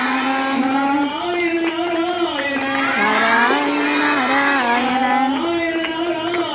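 A group of children singing a Hindu bhajan together in unison, holding long notes that step up and down in pitch.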